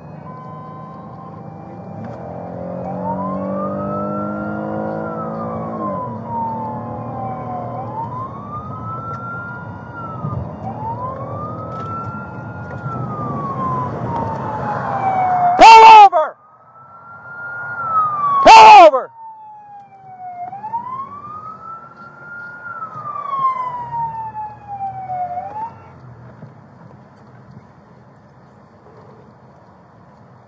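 Police siren on a slow wail, rising and falling about every four to five seconds, heard from inside a moving patrol car over engine and road noise, with two short, very loud blasts in the middle. The siren stops near the end.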